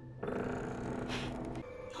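Ominous low drone from a TV drama's soundtrack: a steady, growling held sound that stops about a second and a half in, with a single higher held tone following.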